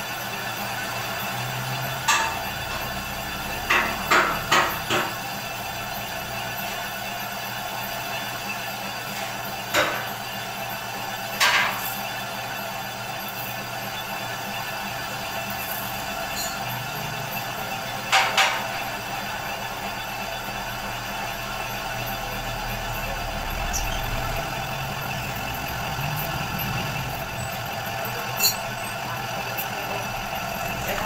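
Metal lathe running steadily while a boring bar cuts inside the bearing bore of a track idler wheel, reboring it for reconditioning. A steady machine hum runs throughout, with a few sharp clicks at irregular times.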